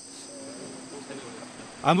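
A pause in speech filled with a steady high-pitched whine or chirring, several even pitches held without change, over faint background sounds. A man's voice comes in near the end.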